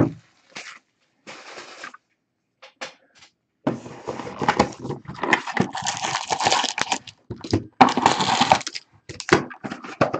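A cardboard trading-card hobby box being opened by hand and its sealed foil card packs slid out and set down: scattered rustles and scrapes, then dense crinkling and scraping from about four to nine seconds in.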